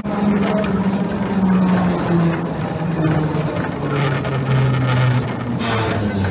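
N3 tram's traction motor whine, heard from inside the car, falling steadily in pitch as the tram slows, over the rumble of the wheels on the track. A short hiss comes near the end.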